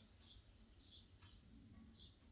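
Near silence: room tone, with a few faint, short high-pitched chirps.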